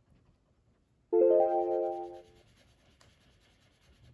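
A short sound effect of bright keyboard-like notes entering quickly one after another from low to high about a second in, ringing together for about a second and then fading. It is a 'magic' flourish marking the jump from the half-coloured page to the finished picture.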